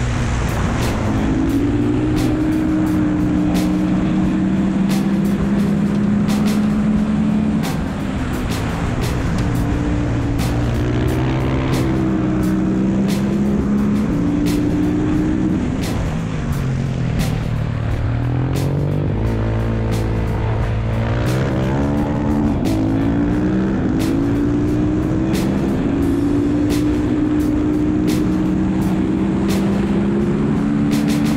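Husqvarna supermoto's single-cylinder engine pulling hard at racing speed. Its pitch holds for a few seconds, then climbs and drops back through gear changes, over heavy wind rush on the bike-mounted microphone.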